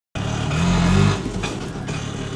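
Auto-rickshaw's small engine running as it pulls away on a dirt road. It is loudest in the first second, then eases slightly.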